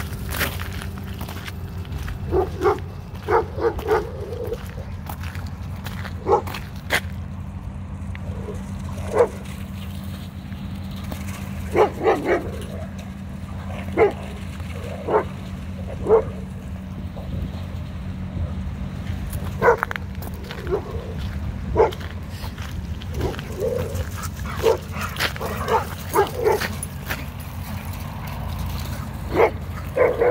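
Several dogs barking and yipping in short, scattered calls as they chase and wrestle each other in play.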